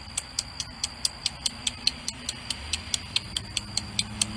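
Rapid, even high-pitched clicking, about five clicks a second, keeping a steady beat; a low hum comes in about halfway.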